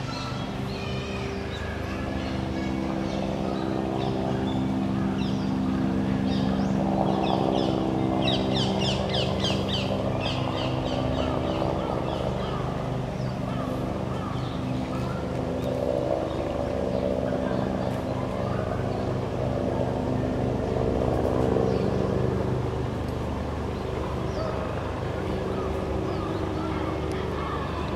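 Outdoor city-park background: a steady low engine-like hum under faint distant voices, with a quick run of high chirps about eight to ten seconds in.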